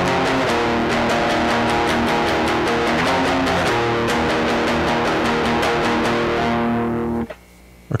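Distorted electric guitar tuned to C standard playing a two-note power-chord riff on the two lowest strings: strummed at the fifth and seventh frets, then rapid repeated strums two frets lower. It stops about seven seconds in.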